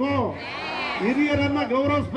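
Speech only: a man speaking into a podium microphone.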